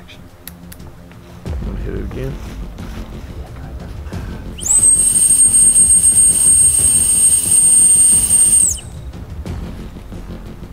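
A loud, shrill whistle blown in one steady blast of about four seconds, starting about halfway through, its pitch sliding up as it starts and dropping as it stops. Low handling rumble runs under it.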